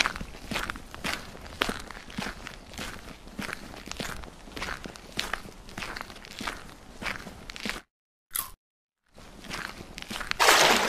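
Footstep sound effect: a steady run of crunchy steps, about two a second, that cuts off suddenly near the end, with one short sound in the gap that follows.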